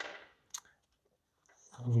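Two short clicks about half a second apart, the first sharper with a brief tail, as a small plastic bag of spare screws is set down on a tabletop.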